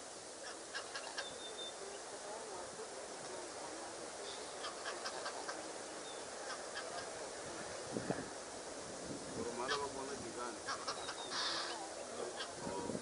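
Birds calling in three short bursts of rapid, clicky notes over a steady outdoor hiss, with a single sharp knock about eight seconds in.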